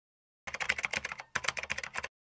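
Keyboard typing sound effect: two quick runs of rapid key clicks, the first starting about half a second in, each cutting off abruptly into dead silence.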